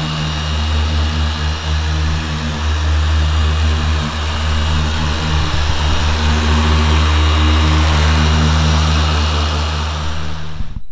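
Griot's Garage G9 random orbital polisher running steadily while it polishes car paint with a foam pad: an even motor hum with a thin, steady high whine above it.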